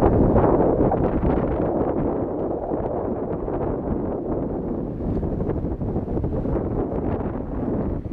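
Wind blowing across the microphone over small waves breaking and washing onto a pebble shore: a steady rush, loudest in the first second.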